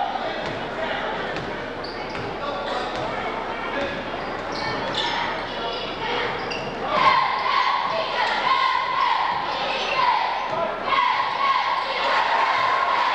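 Basketball being dribbled on a hardwood gym floor during play, with crowd voices echoing around the gym. About seven seconds in, louder shouting starts and carries on.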